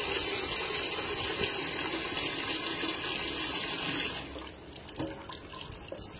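Water running steadily from a tap, shut off about four seconds in.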